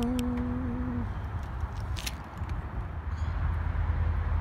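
A man's voice holding a drawn-out final vowel for about a second, then steady low outdoor background rumble with a few faint clicks.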